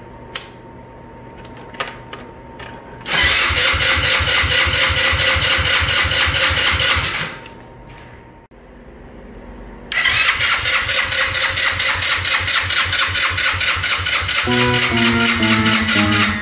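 A Hammerhead go-kart engine being turned over by its electric starter in two long bursts of fast, even cranking, about four seconds and then about six seconds, with a short pause between. It never catches: the engine has no spark, which the owner traces to a faulty CDI box. A few light clicks come before the first burst, and guitar music comes in near the end.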